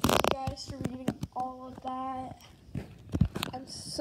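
A person's voice making wordless sounds in short held notes, over sharp clicks and knocks from the camera being handled, with a loud burst at the very start.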